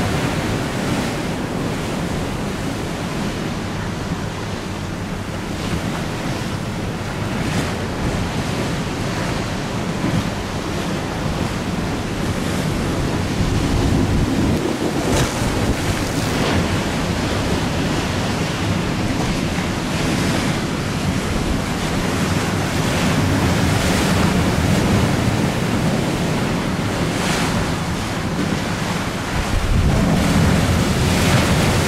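Wind buffeting the microphone over choppy, whitecapped river water, a loud steady rush with brief gusty surges every few seconds.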